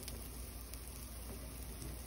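Faint, steady sizzle of pancake batter cooking in butter in a frying pan, with a low hum underneath.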